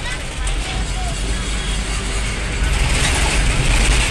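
Bus engine rumbling with road noise, heard from inside the bus cabin up by the driver's seat. It grows louder in the second half.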